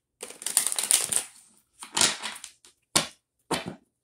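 A deck of tarot cards being shuffled by hand: a papery shuffle lasting about a second, then three shorter ones.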